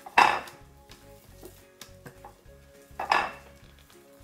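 Hands squishing and kneading chunky, sticky instant-snow slime in a ceramic bowl and a glass baking dish, with fingers clicking against the dishes. Two louder noisy bursts stand out, one just after the start and one about three seconds in.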